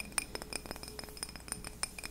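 Fingernails tapping on a glass candle jar: quick, irregular soft taps, several a second, each with a brief bright glassy ring.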